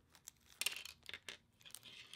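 Small metal machine screws and hex nuts clicking lightly against each other and a tabletop as fingers spread them out; a few faint, scattered clinks.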